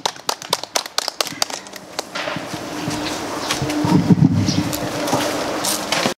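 Applause from a small audience: scattered, separate hand claps for about two seconds, then a denser spell of clapping with voices mixed in.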